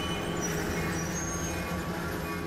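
Freight train of tank cars pulled by diesel locomotives rolling past: a steady rumble with a low, even hum.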